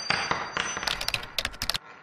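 Animated logo intro sound effect: a metallic hit with a high ringing tone, then about a second in a fast run of sharp clicks, like keys clattering. It cuts off near the end into a fading echo.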